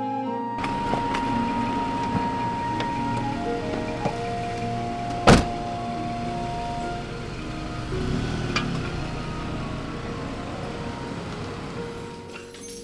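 Background music over steady traffic and street noise, with a single sharp, loud slam about five seconds in.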